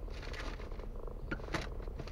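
Car engine idling, heard inside the cabin as a steady low rumble, with a few short clicks a little over a second in.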